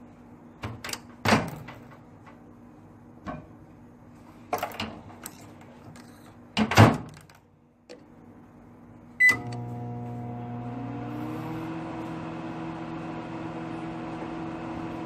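Microwave oven being loaded and started: a run of knocks and clunks, the loudest about seven seconds in, then a short keypad beep about nine seconds in. The oven then starts running with a steady hum, one tone rising slightly a second after it starts.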